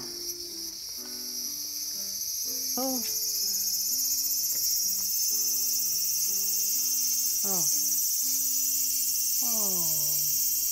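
A cicada buzzing, high-pitched and continuous, swelling louder over the first few seconds and then holding steady.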